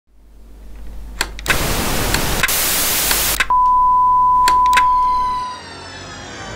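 Intro sound effect: a static-like hiss with a few clicks, then a steady high beep held for about two seconds like a broadcast test tone, giving way to the start of theme music near the end.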